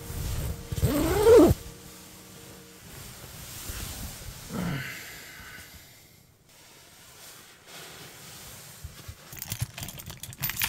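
A man's drawn-out groaning yawn on waking, rising and then falling in pitch about a second in, then a shorter falling groan a few seconds later. Keys jangle near the end.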